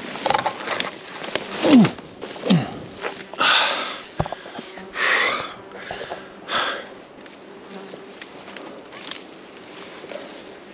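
Flies buzzing close around the microphone, with two passes that drop in pitch about two seconds in. Branches and leaves rustle, and there are short, heavy breaths as someone pushes up through dense scrub. It quietens in the last few seconds.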